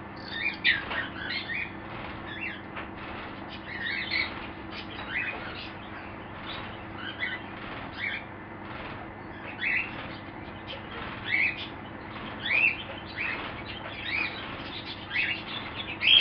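Bird calls: short rising chirps, irregularly about one a second, over a faint steady hum.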